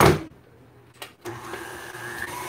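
KitchenAid tilt-head stand mixer: a thump as the mixer head comes down over the bowl, a small click about a second later, then the motor starts and runs steadily at speed five, beating buttercream.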